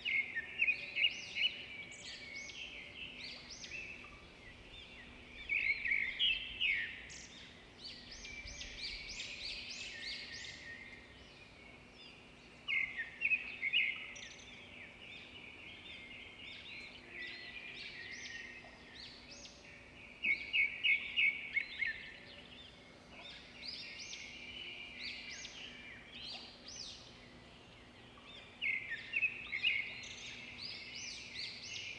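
Songbirds singing: loud bursts of rapid trilled notes come about every seven seconds, five times, with softer twittering and chirps in between.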